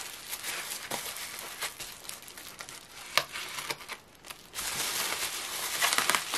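Plastic bubble wrap crinkling and rustling as it is pulled open by hand, with scattered sharp crackles. It dips briefly about four seconds in, then picks up again.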